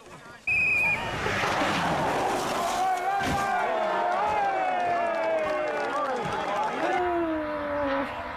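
Rally car engine at high revs from the crash-compilation footage, its note slowly falling over several seconds, after a brief high tone about half a second in; near the end another car's engine comes in, also falling in pitch.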